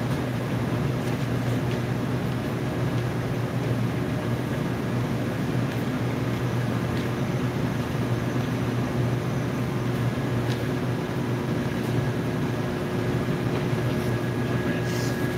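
Steady hum of a warehouse store's ventilation and refrigeration, with a few faint ticks.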